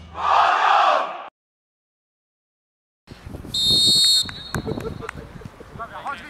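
A short noisy burst ends the intro, followed by a second and a half of silence. Then a referee's whistle blows once for about half a second, signalling the kick-off, followed by players calling out and the knocks of the ball being kicked.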